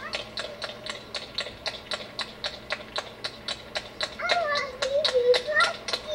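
A small child's high voice, a few bending vocal sounds starting about four seconds in, over a rapid, even ticking of about five ticks a second.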